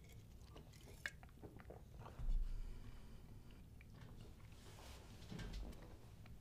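A man sipping from an aluminium drink can and swallowing, quietly, with faint wet mouth clicks. The loudest moment is about two seconds in.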